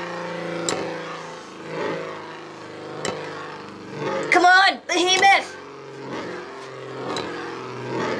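Two Beyblade spinning tops whirring in a plastic stadium, a steady hum with a few sharp clicks as they knock together. A shouted voice breaks in about four seconds in.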